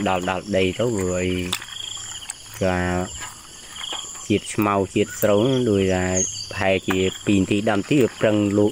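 A person talking in short bursts over a steady, high-pitched chirring of insects.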